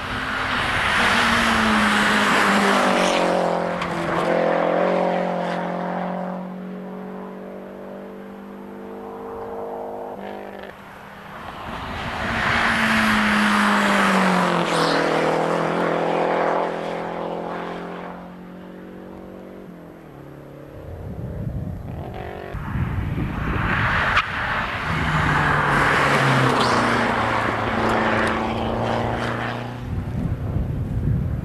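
Three rally cars pass one after another, about twelve seconds apart. Each engine is revved hard on the approach, and its note drops in steps as the car changes down for the bend, then fades away.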